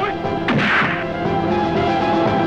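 A dubbed film punch sound effect: one sharp whack about half a second in, over background music with steady held tones.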